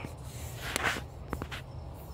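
Microfiber cloth rubbing inside a throttle body bore: a short scrubbing rustle a little under a second in, followed by a few light clicks.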